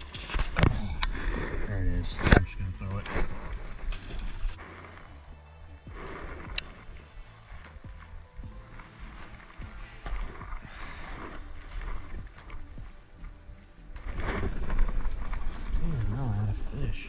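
Footsteps crunching and crackling through dry fallen leaves and brush, loudest in the first few seconds, with music underneath.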